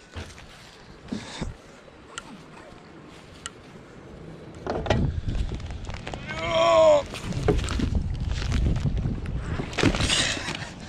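A small john boat being pushed over a grassy bank, its hull scraping and rumbling across the ground from about halfway through. A short wavering higher sound comes in the middle of the scraping.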